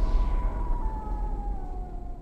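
Eerie trailer sound effect: a deep, steady rumble under a drawn-out whining tone that slowly falls in pitch and fades away.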